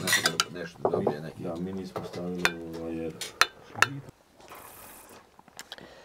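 Forks and plates clinking during a meal, with voices in the background, for about three seconds; then it goes much quieter, with a brief faint hiss.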